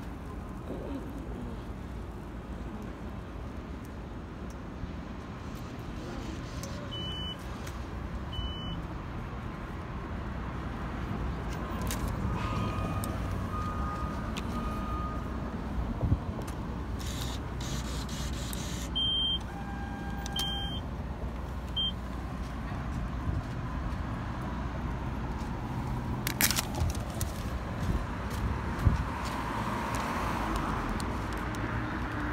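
Steady low rumble of a city bus and street traffic. A few short, high electronic beeps sound about a third of the way in and again around two-thirds of the way, and a few sharp clicks come near the end.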